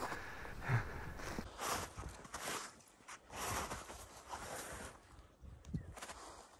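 Boots walking through snow, about one step a second, stopping about five seconds in, followed by a few faint knocks.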